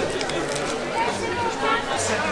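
Indistinct background chatter of diners in a busy restaurant dining room.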